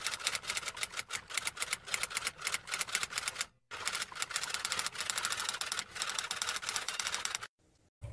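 Typewriter typing sound effect: a fast run of sharp key clicks, many to the second, as text types itself out. There is a brief pause about three and a half seconds in, and it stops shortly before the end.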